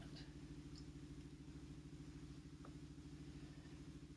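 Faint steady low mechanical hum with a fast, even flutter. One soft tick comes about two and a half seconds in.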